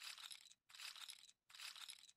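Faint clinking of chips, the online roulette game's sound effect as bets are laid on the table, heard in three short bursts.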